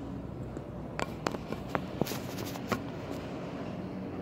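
About half a dozen light clicks and taps in the middle, from someone moving about while holding a phone, over a steady low hum.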